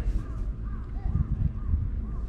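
A bird calling over and over in short arched notes, about two a second, over a steady low rumble.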